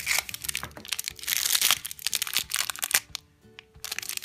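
Crinkling of a cellophane candy wrapper and plastic egg being handled, in bursts of crackle over the first three seconds or so, with background music underneath.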